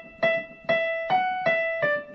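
Casio CDP-135 digital piano playing a single-note melody: repeated E notes, then a step up to F sharp, back to E, and down to D. There are five separately struck notes, each ringing and fading before the next.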